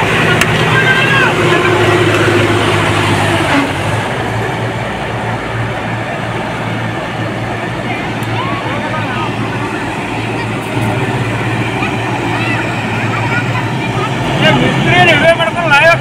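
John Deere 5405 tractors' diesel engines running steadily as they drive along, with men's voices near the start and shouting near the end.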